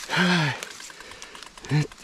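A tired man lets out a breathy, voiced groan about half a second long with a falling pitch, then makes a brief vocal sound near the end. He is a cramping, worn-out cyclist.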